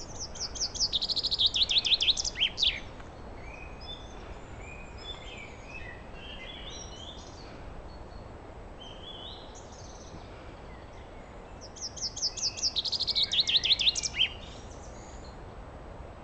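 A songbird singing two song phrases about ten seconds apart, each a quick run of high notes falling into a lower trill and ending in a short flourish. Fainter chirps from other birds come in between, over a steady low background rumble.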